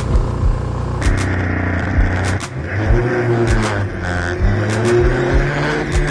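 Car engine running and revving as the car pulls away and drives off, its pitch rising and falling, with sharp knocks at intervals.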